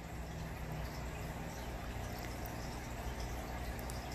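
Steady aquarium water noise with a faint low hum underneath.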